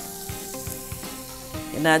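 Sliced onions, ginger and green chillies sizzling steadily as they fry in oil in a pot.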